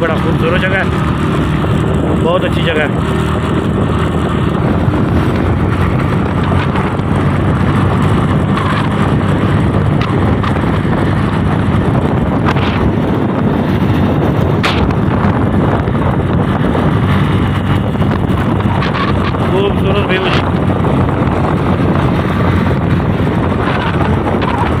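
Steady wind rush and road and engine noise heard from a vehicle moving along a road, with wind buffeting the microphone.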